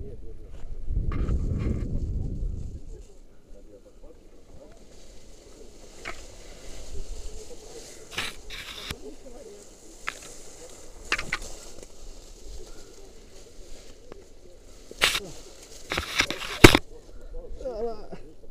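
Hanging rope-jump gear handled on a body-worn camera: a brief low rumble of wind on the microphone about a second in, then scattered clicks and rustles of rope and gloves, with a few sharp knocks near the end, the loudest just before the jumper is grabbed.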